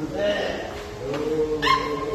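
Several people's voices talking and calling out over one another, with a short, high, rising cry about three-quarters of the way through.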